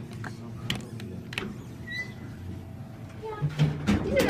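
Elevator car interior: a steady low hum with a few light clicks and one short high beep about halfway through.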